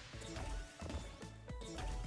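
Online slot game audio: background music with a steady beat, overlaid with short chiming and crash-like sound effects as winning symbol clusters burst and the payout climbs.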